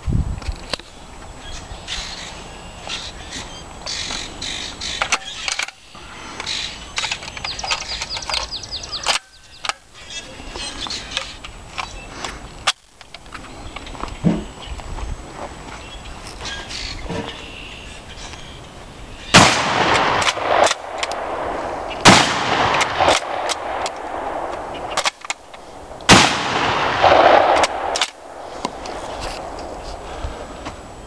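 A Marlin Super Goose 10-gauge bolt-action shotgun being loaded, with small clicks and handling noise. Then come three loud shotgun blasts a few seconds apart in the second half, each trailing off in an echo, with the bolt worked between shots.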